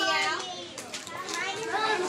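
Young children's voices chattering, several at once, without clear words.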